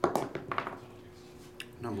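A small plastic die rolled onto a tabletop mat, clattering with several quick taps in the first half-second or so before it comes to rest.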